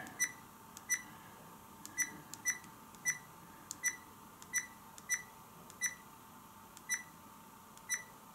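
Akaso EK7000 action camera's key-tone beeping as its menu arrow button is pressed repeatedly: about a dozen short, high beeps, one per press, spaced irregularly about half a second to a second apart, each stepping down the settings menu.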